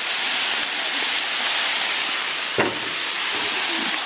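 Rice, shrimp and vegetables sizzling on a hot Blackstone flat-top griddle, with soy sauce just poured over the rice: a steady hiss, with one knock about two and a half seconds in.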